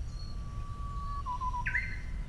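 A songbird singing: one long steady whistle, then a quick wavering phrase and a higher note near the end.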